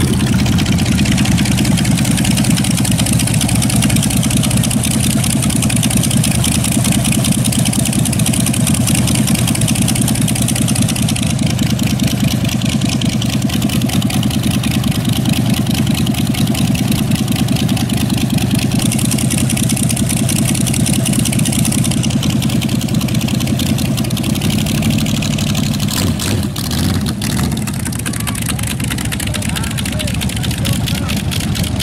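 Car engines running at low speed as show cars drive slowly past; in the second half a silver C5 Corvette convertible's LS1 V8 rolls by at a crawl, its note shifting near the end. Crowd voices underneath.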